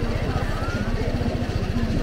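Motorcycle engine idling close by, a steady rapid low throb, with a crowd's voices in the background.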